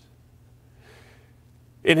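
A pause in a man's speech: a faint breath drawn in about a second in, over a steady low hum, before his voice resumes right at the end.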